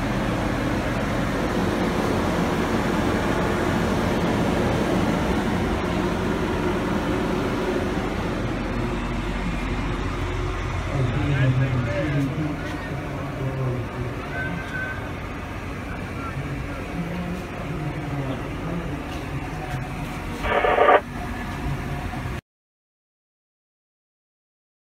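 Indistinct voices of people talking over a steady low hum of equipment. Just before the end there is one brief loud pitched sound, and then the sound cuts off to silence.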